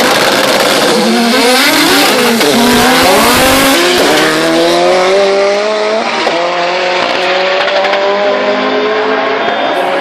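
Turbocharged race cars, the title's Opel Calibra Turbo and Audi S2, launching hard off a drag-strip start and accelerating through the gears. Engine pitch climbs and falls back at each upshift several times as they pull away.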